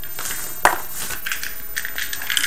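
Small objects being rummaged through and handled while someone searches for a die: one sharp click about two-thirds of a second in, then faint light rattling and rustling.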